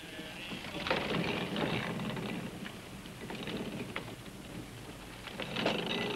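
A quiet, steady rushing noise like rain or water.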